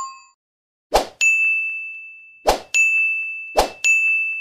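Animation sound effects: three times, a short pop followed by a bright bell-like ding that rings and fades, about one and a half seconds apart. The tail of a quicker chime fades out at the start.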